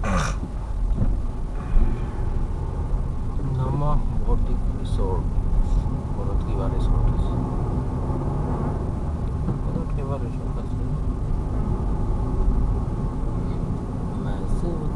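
Car cabin noise while driving on a mountain road: a steady low engine and tyre rumble, with a faint voice heard at times over it.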